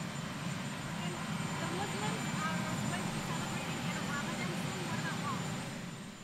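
Steady low aircraft engine rumble, with a faint, unclear voice underneath.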